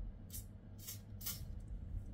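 Three short hisses from a small pump spray bottle of foaming face serum, sprayed onto the chin about half a second apart.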